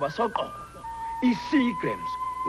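A voice speaking a few words in a foreign-sounding or made-up language that the recogniser could not write down, over commercial background music with one steady held note that comes in about a second in.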